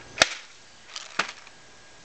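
Plastic container made from a cut Coke bottle being handled: a sharp snap about a quarter second in, then a fainter click about a second later.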